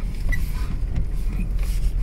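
Mitsubishi Pajero's 2.8-litre turbodiesel running as the vehicle drives through deep snow, heard from inside the cabin as a steady low rumble.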